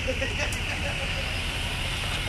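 Steady outdoor background noise: a low rumble with a hiss over it, with faint voices in the first half and a faint click about half a second in.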